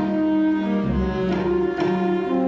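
Orchestra playing, bowed strings to the fore, in a line of held notes that change about every half second over a low bass part.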